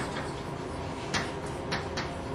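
A few short, faint clicks at uneven intervals, one about a second in and two near the end, over a steady low hum of room noise.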